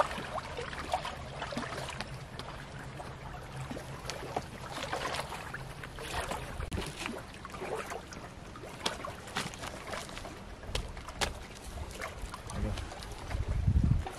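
Small waves lapping at the rocky reservoir shore, with a low steady hum that fades out about halfway through, scattered sharp clicks, and a gust of wind on the microphone near the end.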